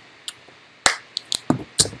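A plastic shaker bottle being handled: a quick run of about six sharp clicks and knocks from its plastic lid and body.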